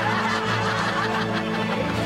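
A woman laughing over light background music.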